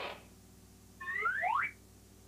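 A toy wind-up machine's key being cranked, a last ratcheting rasp right at the start, then about a second in a rising whistle sound effect, several quick upward glides overlapping over half a second or so, as the machine sends the teddy bear to the toy box.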